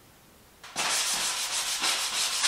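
Hand sanding a wooden windowsill, rough back-and-forth strokes about three or four a second, starting under a second in.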